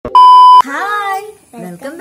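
Television test-pattern tone: one steady beep lasting about half a second that starts and cuts off sharply, followed by a voice speaking.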